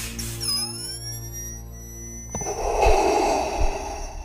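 Film music with sustained tones and swooping, gliding sound effects. From about halfway through, a long, loud, breathy hiss comes in over it, like Darth Vader's respirator breath.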